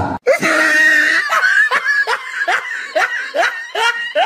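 A person laughing, a run of short bursts about three a second, each falling in pitch.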